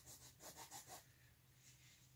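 Faint rubbing of a rag on an oil-painted canvas, a few quick strokes in the first second, lifting out wet paint.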